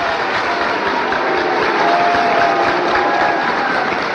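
Crowd noise: a steady, dense hubbub of many voices.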